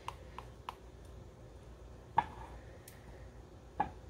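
Silicone spatula stirring a thick milk-and-cream mixture in a glass measuring cup, knocking against the glass now and then: a few soft clicks, the loudest about two seconds in and another near the end.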